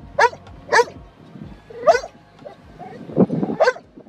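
Yellow Labrador retriever yelping and whining in short, high calls, four of them in a few seconds, with a lower, louder sound a little after three seconds.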